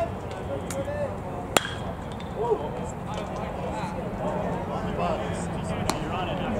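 A metal baseball bat hitting a pitched ball: one sharp ping about a second and a half in, over murmuring spectators' voices.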